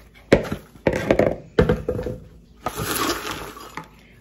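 Several sharp knocks and clinks as a mixing bowl is set down and handled, then a rustle as a metal measuring cup scoops popped popcorn.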